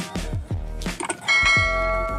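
Intro music with a repeating bass drum beat, and a little over a second in a bell chime rings out and holds for about a second: the notification-bell sound effect of a subscribe-button animation.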